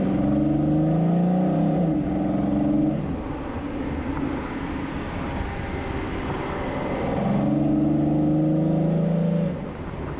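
VW Atlas 3.6-litre VR6 engine pulling under throttle, fitted with an aftermarket intake and a resonator delete, with tyres on a sandy dirt road. The engine note is loud and steady for the first three seconds, eases off in the middle and swells again near the end.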